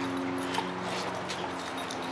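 Dogs at play, with a few light clicks from paws and collar tags over a steady low hum.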